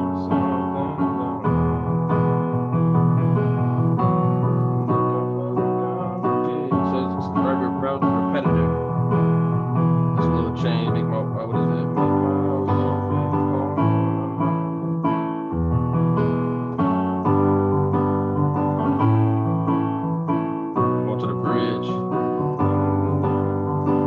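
Digital keyboard with a piano voice playing a rock chord progression in B major as steadily repeated block chords, with the root and fifth in the left hand. The F-sharp minor and G chords are among them.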